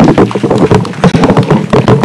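Audience applauding: a sudden outbreak of dense, irregular clapping with voices mixed in.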